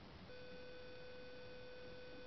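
A steady electronic beep tone that starts about a third of a second in and holds at one unchanging pitch.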